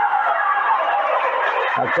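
Crowd noise in a futsal gymnasium: a dense hubbub of spectators' and players' shouting during play. The commentator's voice comes back in near the end.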